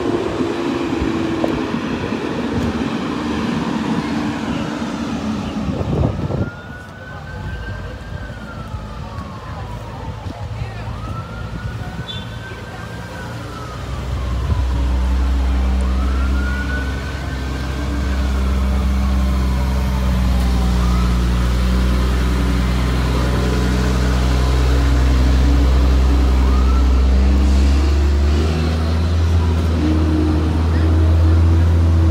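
An emergency vehicle siren wails three times, each call rising quickly and falling slowly, with a knock just before the first. From about halfway through, a vehicle engine idles close by, a steady low hum.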